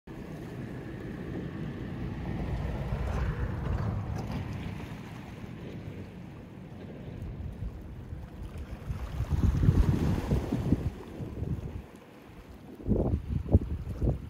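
Wind buffeting the microphone in uneven gusts over the wash of sea water around shore rocks, with the strongest gusts a little past the middle and again near the end.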